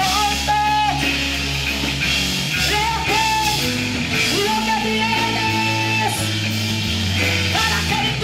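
A woman singing a worship song into a microphone with long held notes, backed by a live band with electric guitar and steady low bass notes.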